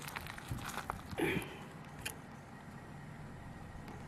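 Low steady background with a few faint rustles and a single small click about two seconds in: handling noise from moving the camera down to gravelly ground.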